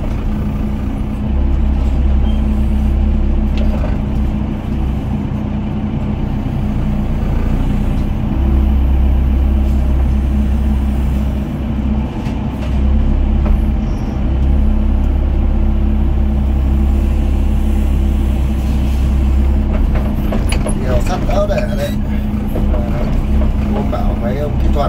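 Doosan DX55 mini excavator's diesel engine running steadily under working load as the machine digs rubble and swings to load a dump truck.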